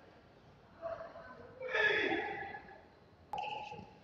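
Short vocal shouts during a pencak silat bout as the fighters grapple in a clinch: a brief cry about a second in, a louder shout falling in pitch around two seconds, then a sharp knock followed by another short cry near the end.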